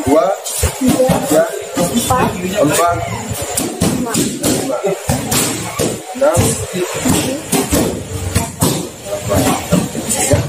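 A man's voice counting aloud in Indonesian, repeating "empat", over background music, with short sharp knocks throughout.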